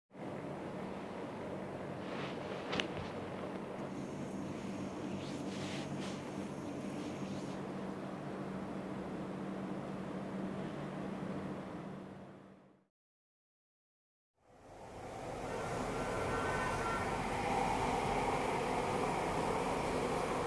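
Steady indoor room tone with a low electrical hum and one brief click about three seconds in. It fades to silence just before the halfway point, then a steady street background noise fades in.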